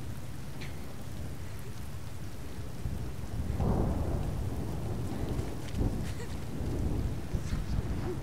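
Distant thunder rumbling low and steadily, swelling louder about three and a half seconds in.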